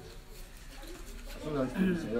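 A person's voice, faint at first and much louder from about one and a half seconds in.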